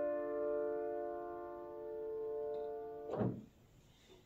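A held piano chord ringing on and slowly fading. Just after three seconds a brief soft noise comes as the chord stops, and the sound then cuts off to silence.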